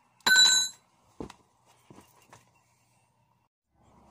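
A steel hand tool put down on tarmac, giving one short, bright metallic ring, followed by a duller knock about a second in and a couple of faint knocks.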